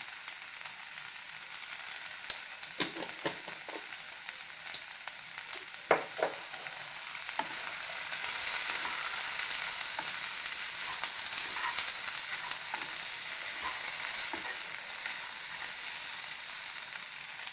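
Chopped cluster beans sizzling in oil in a nonstick pan while a wooden spatula stirs them, with a few light knocks and scrapes of the spatula against the pan in the first half. The sizzle grows louder about halfway through.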